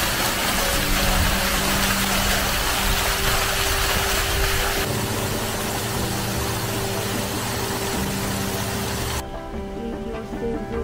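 Fountain water jets splashing, changing about five seconds in to a softer rush of water pouring down a stone wall; the water sound cuts off suddenly near the end. Background music plays steadily underneath.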